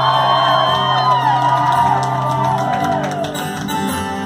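Live acoustic rock performance: acoustic guitar under a long held high sung note that fades out about three seconds in, with whoops and shouts from the audience over it.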